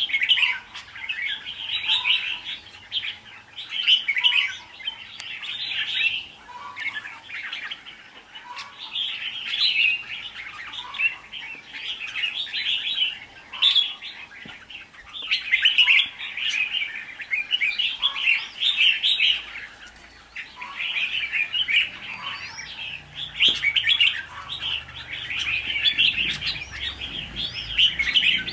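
Red-whiskered bulbul singing: short, bright warbled phrases repeated every second or two.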